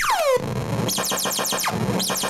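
Circuit-bent Executor effects keychain toy, played as a drum machine from arcade buttons, giving out electronic sound effects. A falling laser-like zap comes at the start, then quick repeated falling chirps over a noisy hiss.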